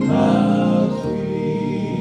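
A male vocal trio singing a gospel song in harmony, with acoustic guitar accompaniment, holding notes and changing chord about a second in.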